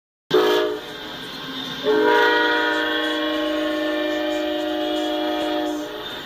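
Amtrak GE P42DC Genesis locomotive's multi-tone air horn: a short blast, then a long blast of about four seconds, several tones sounding at once. The locomotive is sounding for the grade crossing it is passing, the short-then-long ending of the standard crossing signal.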